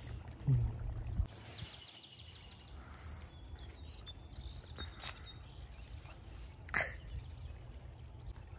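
Quiet outdoor ambience by a woodland creek: a steady low rumble with a faint run of chirps about two seconds in and a couple of brief clicks later.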